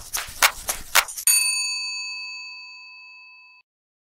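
End-card sound effect: a quick run of sharp taps, about four a second, stops a little over a second in and gives way to a single bell ding that rings and fades away over about two seconds.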